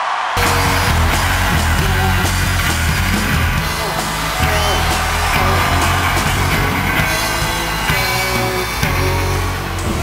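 Rock music from a band with drums, bass and electric guitars, kicking in abruptly just after the start and playing on loud and steady.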